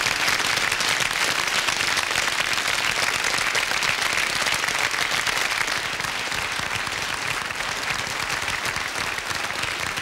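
Studio audience applauding at the end of a solo piano song, a dense steady clapping that eases slightly over the second half.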